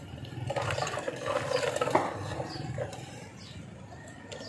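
Falsa juice poured in a thin stream from a steel ladle back into a steel pot of juice, splashing. The splashing is loudest from about half a second to three seconds in.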